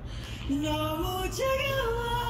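A single voice singing a short melody, with held notes that step up and down, starting about half a second in, over a low steady hum.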